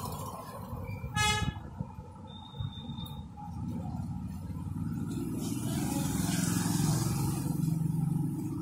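A short vehicle horn toot about a second in, then a low vehicle engine rumble that grows louder toward the end, as of traffic passing.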